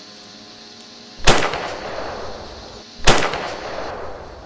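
Two rifle shots about two seconds apart, each a sharp crack with a short echoing tail, fired at a wolf from a snowmobile. A low, steady snowmobile engine hum runs underneath.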